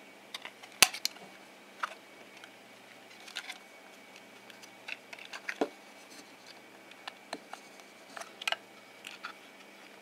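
Snap-fit plastic Raspberry Pi case being pried at by hand: irregular clicks and taps of its clips and shell, the sharpest about a second in. The case is stiff and hard to open.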